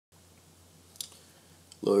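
A single sharp click about a second in, with a fainter one just after, over a faint low hum; a man starts to say "hello" at the very end.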